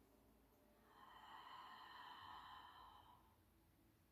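Near silence with one faint, long exhale lasting about two seconds in the middle.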